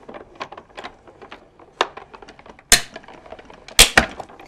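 Hand-cranked Cuttlebug die-cutting machine being cranked to roll the cutting plates and Spellbinders die through: an irregular run of clicks, with two loud sharp clacks, one about two-thirds of the way in and one near the end.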